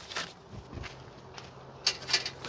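Small handling noises: a few soft knocks and rustles of things being moved about, with a sharper click near the end, over a faint steady low hum.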